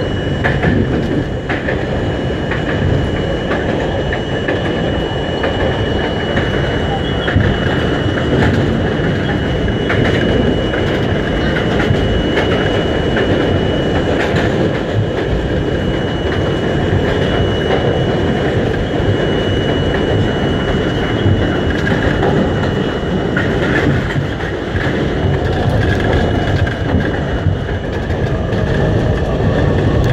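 An R42 subway car running on elevated track, heard from on board: a continuous rumble of wheels on rail broken by frequent short clicks. A thin, steady high whine runs over it and fades out about halfway through.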